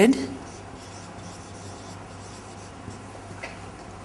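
Whiteboard marker writing on a whiteboard: faint short strokes of the felt tip scratching across the board as a word is written out.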